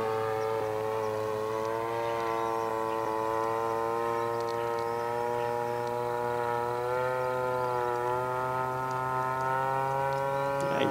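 RCGF 30cc single-cylinder two-stroke gas engine with a Pitts-style muffler and an 18x8 prop, running in flight on an RC aerobatic plane. It is a steady drone whose pitch rises and dips slightly as the throttle and the manoeuvres change.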